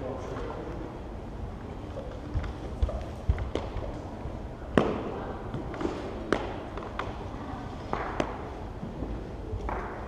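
Several sharp knocks and taps at irregular spacing, the loudest about five seconds in, from sparring gear being handled and footsteps on a gym floor, with low voices in between.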